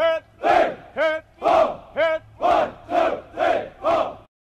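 A group of soldiers shouting a military cadence count in unison: loud, evenly spaced shouts, about two a second.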